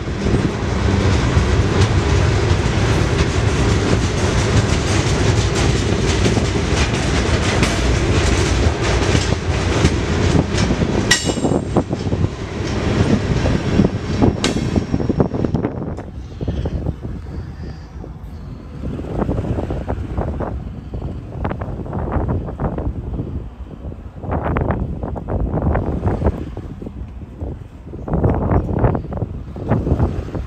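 Freight cars rolling past close by, wheels clattering over the rail joints, with a brief high wheel squeal about eleven seconds in. The rolling noise stops at about fifteen seconds and gives way to quieter, uneven gusts of rumbling noise.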